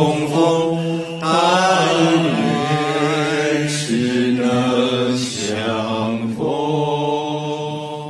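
Group of voices singing a slow Buddhist chant in unison, each note held for a second or two over a low steady tone.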